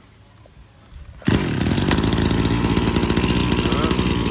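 STIHL two-stroke brush cutter engine being pull-started: quiet for about a second, then it fires suddenly and settles into a steady run. It starts very easily.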